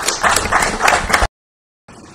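Applause, a rapid patter of hand claps, cut off abruptly a little over a second in.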